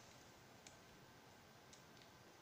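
Near silence: room tone with two faint clicks about a second apart.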